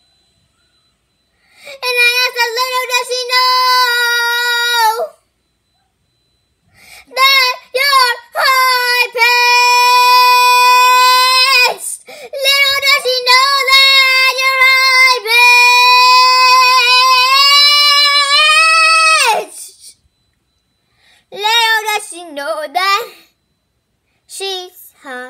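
A young girl singing unaccompanied in a high voice, holding long notes with a slight waver, in several phrases separated by short pauses, with a shorter, broken phrase near the end.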